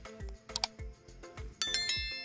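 Background music with a steady beat. About one and a half seconds in, a bright, ringing chime sounds over it: the sound effect of a subscribe-button animation.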